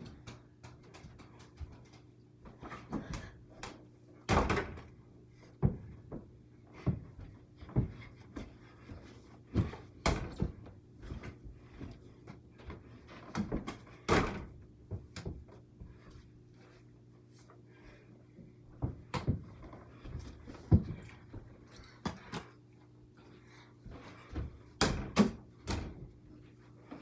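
A small basketball striking an over-the-door mini hoop and the glass-paned door it hangs on, a sharp knock every few seconds, with softer thuds of the ball and footsteps on carpet between shots.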